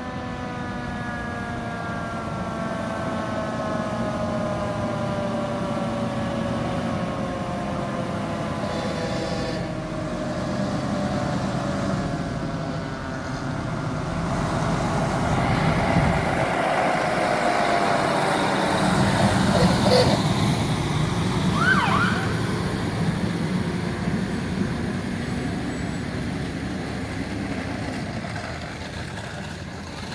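Fire engine approaching and driving slowly past, its siren winding down with a slowly falling pitch, then a second slow fall as the truck passes. Engine rumble grows loudest as it goes by, with a few short sharp sounds about two-thirds of the way through.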